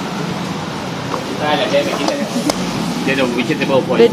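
People talking over a steady rushing kitchen background noise, with one sharp click about two and a half seconds in.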